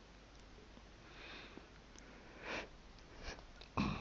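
A person sniffing and breathing in, faint, several times; the loudest sniff comes about two and a half seconds in.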